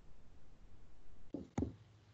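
Two dull knocks about a quarter second apart, a little past halfway, over a faint low hum.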